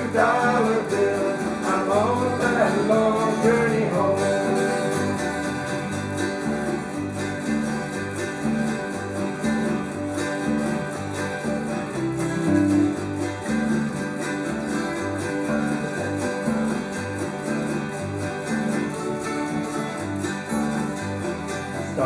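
Bluegrass band playing an instrumental break on mandolin, acoustic guitars, autoharp and electric bass, with a steady stepping bass line under strummed and picked chords. A singing voice trails off in the first few seconds.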